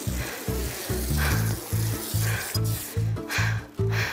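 Background music with a steady bass pulse of about three notes a second, over a fizzing hiss.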